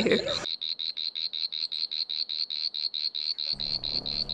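Night-time animal call: a high-pitched chirp pulsing steadily about eight times a second.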